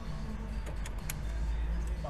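Car audio system playing music at low volume, heard mostly as steady deep bass, with a few faint clicks.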